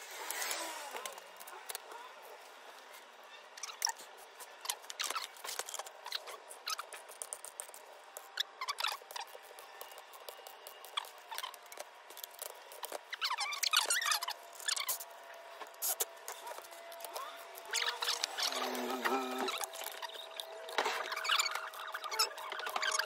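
Scattered metal clicks, taps and short squeaks from hand tools and steel plates, washers and nuts being handled and adjusted on a threaded-rod press set up to push a rubber differential mount into its housing. Louder clusters of clicks come about two-thirds of the way in and again near the end.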